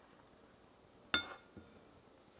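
A single sharp clink about a second in, with a brief ringing tone, as a utensil strikes a glass Pyrex measuring cup, followed by a fainter soft knock.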